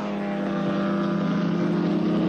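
Group C touring car engines running hard through a corner, a steady engine note growing louder as the cars approach.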